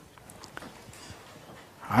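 Lecture-room tone in a pause: faint even hiss with a couple of soft clicks.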